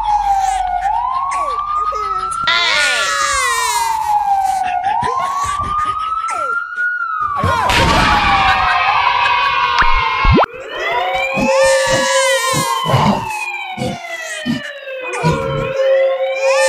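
Dubbed sound effects. First a siren-like wail that falls slowly and rises quickly, about every two and a half seconds. Then an explosion about seven and a half seconds in, then a sharp falling whistle, then a jumble of gliding tones and short thumps.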